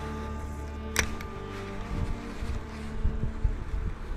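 Background music with steady held tones, and a single sharp click about a second in. Low, irregular rumbles of wind on the microphone come in during the second half.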